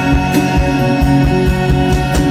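Live rock band playing an instrumental stretch: drums, bass guitar and keyboards with sustained chords, and no voice.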